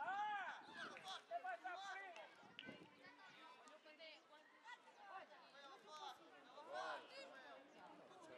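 Several high-pitched voices shouting and calling out during football play, several overlapping, with a loud call right at the start and another about seven seconds in.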